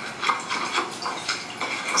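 Tomatoes, onions and pepper being ground with rock salt in an earthenware bowl: repeated scraping strokes, about three a second.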